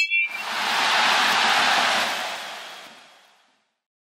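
Stadium crowd noise, an even wash of applause and cheering that swells in the first second, holds, then fades out to silence about three and a half seconds in. A brief high tone sounds at the very start.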